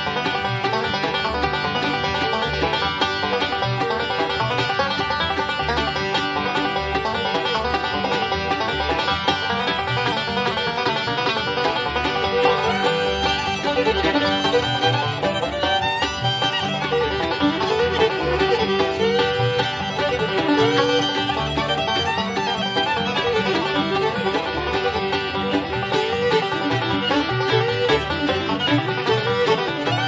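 Bluegrass band playing an instrumental fiddle rag, with fiddle and banjo leading over rhythm guitar, mandolin and bass.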